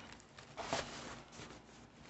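Faint rustling and handling noise of art supplies in plastic packaging being moved around on a desk, with a brief scuff less than a second in and another nearer the end.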